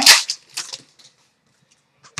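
Short faint clicks of trading cards being flipped and handled by hand, a few of them in the first second, followed by near silence.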